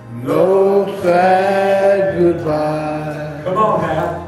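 A man singing a slow gospel song into a handheld microphone, holding long drawn-out notes, the first swooping up into pitch, over a faint steady accompaniment.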